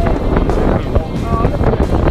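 Wind buffeting the camera's microphone, a rough low rumble, with a brief snatch of voice about a second in.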